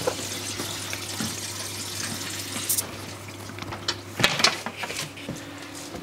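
Water running and gurgling into an aquarium sump from a refill hose, over a steady low hum from the running pumps. A few sharp knocks come about four seconds in.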